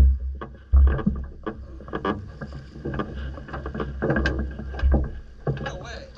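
Rope line hauled in hand over hand over the side of a boat, with scattered knocks and rubbing of the line and gear against the hull. Gusts of wind buffet the microphone at the start, about a second in and again near five seconds.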